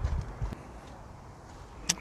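Quiet outdoor background: a low rumble of wind on the microphone that fades in the first half second, then a faint steady hush with a couple of light knocks.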